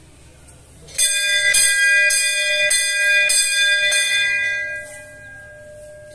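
Hanging brass temple bell rung about six times, strikes a little over half a second apart starting about a second in, then its ringing fades away with one tone lingering.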